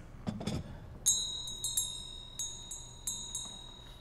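Small bell rung several times, a shop-door bell sound effect for customers entering the pharmacy. A brief low rattle about a third of a second in, then, from about a second in, a high ringing tone renewed by about seven quick, uneven strikes.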